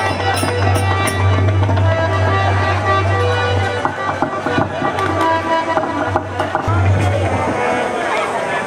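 Live traditional Indian stage music played by a seated ensemble: held melodic notes over frequent drum strokes.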